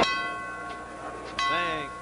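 Boxing ring bell struck twice, about a second and a half apart, each strike ringing on and dying away, signalling the start of round six.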